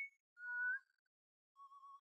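Faint film background music: a few short, high, pure notes, two sounding together about half a second in and a single wavering note near the end.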